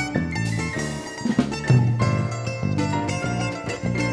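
Live instrumental band music, with an electronic keyboard played two-handed among other instruments: busy, quickly changing notes over sustained low notes.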